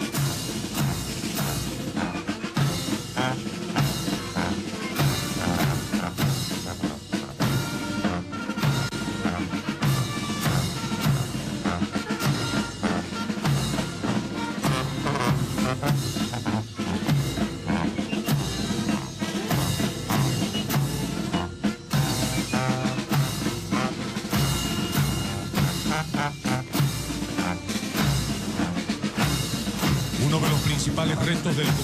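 Military band playing a march, snare and bass drums beating a steady marching rhythm under brass.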